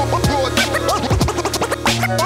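Hip-hop beat with turntable scratching: a record is scratched back and forth in quick strokes over drums and a steady bass line.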